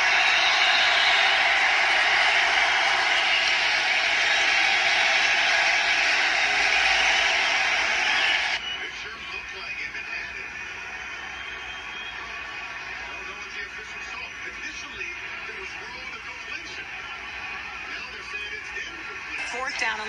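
American football broadcast audio playing through a phone's small speaker: loud, even stadium crowd noise that cuts off suddenly about eight seconds in, followed by quieter crowd noise with faint commentary.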